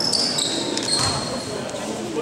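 Basketball game ambience in a gymnasium: voices echoing in the hall, with a few high-pitched squeaks, the longest held for about a second, typical of sneakers on the court floor.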